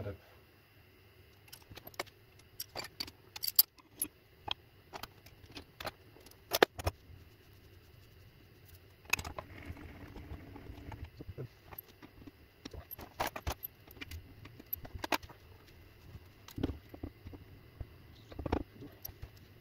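Irregular metal clinks and light knocks of a wrench and steel parts being handled at a shaper's machine vise while the workpiece setup is changed, with the sharpest clanks about three and a half and six and a half seconds in.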